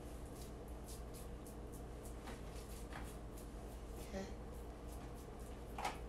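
Bare hands pressing and kneading raw meatloaf mixture of ground beef and turkey sausage in a foil pan: faint, soft squishing and rubbing, over a steady low hum.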